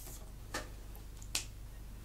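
Two short, sharp clicks about a second apart over a low, steady hum.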